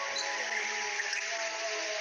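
Music with several notes held steady.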